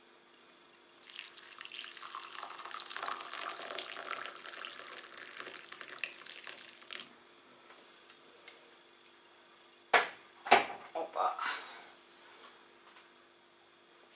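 Boiling water poured from an electric kettle into a ceramic cup over a tea bag, a steady splashing pour lasting about six seconds. About ten seconds in come two sharp knocks.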